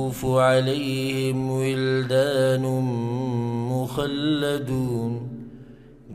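A man's voice chanting Quranic recitation into a microphone: melodic and drawn out in long held notes, trailing off near the end.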